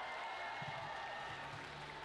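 Steady, fairly faint crowd applause.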